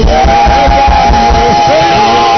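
Loud live church worship music: a long held melody note over a steady low drum beat, with singing.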